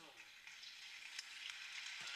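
Faint, steady hiss of background noise with a few light clicks.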